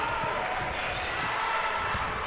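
A basketball being dribbled on a hardwood court, over steady arena crowd noise.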